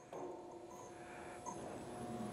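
JD2 XR12 rotary plasma cutter moving through a program without the plasma arc lit, its drive motors giving a faint, steady whine of a few pitched tones.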